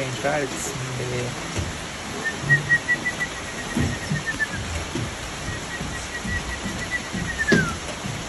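A man whistling an imitation of a bird's song: two long trills of rapid, even notes held at one high pitch, the second ending in a falling slide.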